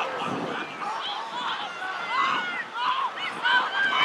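Distant voices calling and shouting across an outdoor football field: scattered short calls with no close speaker.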